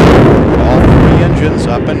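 Space Shuttle Atlantis's three liquid-fuel main engines (RS-25) lighting at main engine start: a loud, deep, steady roar that eases a little near the end.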